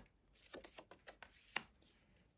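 Faint handling of tarot cards: soft rustling and light taps as a card is slid off and laid on the deck, with one sharper tap about a second and a half in.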